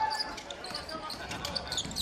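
A basketball bouncing on a hardwood court in short repeated knocks, over the background noise of an arena crowd.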